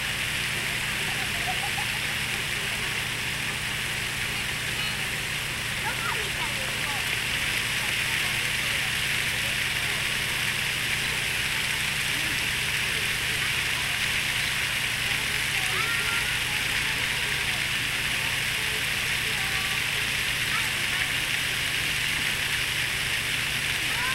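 Steady rushing and splashing of a large park fountain's spray, with faint voices of people talking.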